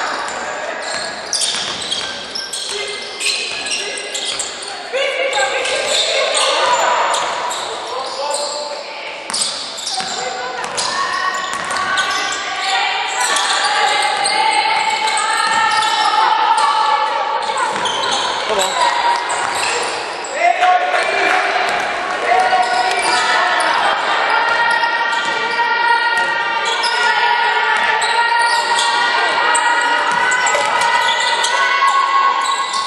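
Basketball bouncing on a hardwood court during play, with repeated short impacts throughout, echoing in a large sports hall. People's voices talk over it, more strongly in the second half.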